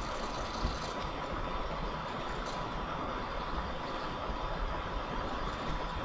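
Steady background noise of the recording between spoken lines: a low rumble and hiss with a faint steady tone, and one soft click about half a second in.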